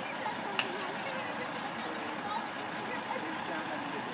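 Steady outdoor street background noise with faint distant voices, and a single sharp click about half a second in.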